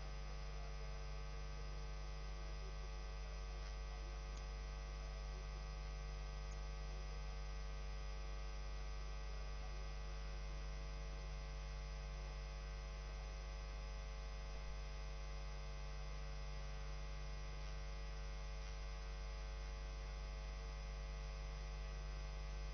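Steady electrical mains hum with a buzzing row of overtones, unchanging throughout.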